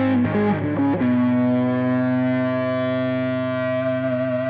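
Epiphone ES Les Paul Pro semi-hollow electric guitar played through a distortion pedal: a quick blues lick, then a single held note that sustains from about a second in, with a higher tone swelling into it near the end.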